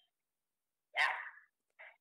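A single short, breathy "yeah" spoken about a second in, otherwise silence.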